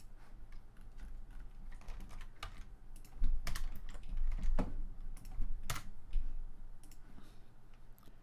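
Computer keyboard keys being pressed in an irregular run of clicks, louder and quicker for a few seconds in the middle.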